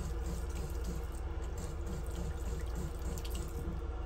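Water running from a washbasin tap onto a hand held under it and splashing into the ceramic basin, over the steady low rumble of the moving bus.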